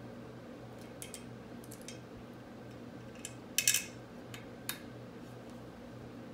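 Scattered light clicks and ticks of small metal hardware being handled as a clamp is fitted onto a rear brake line, the loudest pair of clicks a little past halfway, over a steady low hum.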